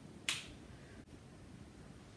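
A single brief, sharp click-like sound about a quarter of a second in, then quiet room tone.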